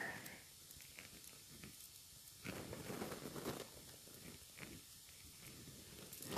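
Faint scraping of a wax crayon being turned in a small handheld pencil sharpener, shaving it; the scraping is loudest for about a second midway through.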